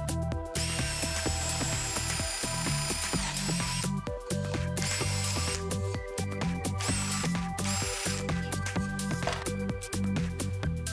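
Cordless drill boring a hole through plywood for a threaded insert. It runs with a high whine for about three seconds, then in a few shorter bursts, over background music with a steady beat.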